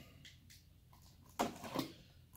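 Near silence, then about a second and a half in a short scraping cut, twice, as a small utility knife slits the tape on a cardboard box.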